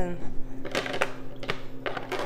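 A juice-collection tray for a cold press being picked up and fitted into the machine: a few light knocks and clicks of plastic against metal, about two a second, over a steady low hum.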